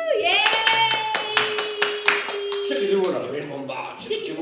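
A few people clapping quickly by hand for about two and a half seconds, over a voice holding one long note, then tailing off into voices near the end.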